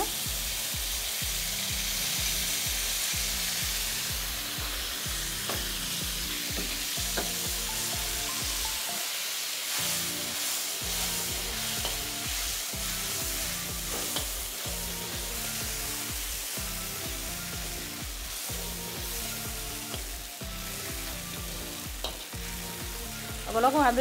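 Sauce sizzling in a hot wok while a metal ladle stirs and scrapes through it. Low rhythmic background music runs underneath and drops out briefly about halfway through.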